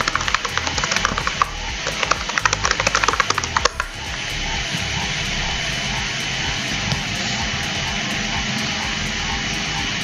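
Computer keyboard typing: quick runs of clicks for the first three to four seconds, then they stop. A steady music bed plays underneath.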